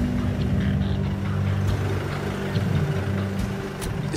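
A vehicle engine idling steadily, a low even hum, with a couple of faint clicks near the end.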